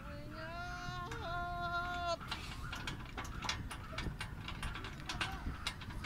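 A playground swing in use: a drawn-out pitched squeal for about two seconds, then scattered light clicks and clinks from the swing's chains.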